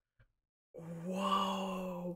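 A person's long, drawn-out closed-mouth vocal sound, like an "mmm" of reaction, held at one steady pitch for just over a second after a brief silence.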